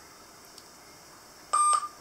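A single short electronic beep, a steady high tone lasting about a third of a second, about one and a half seconds in, over faint room tone.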